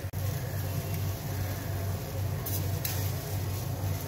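A steady low hum with a rushing noise behind it, and two faint light clicks about two and a half and three seconds in.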